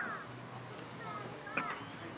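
Faint, high-pitched voices in the distance, a few short calls, over a low steady hum.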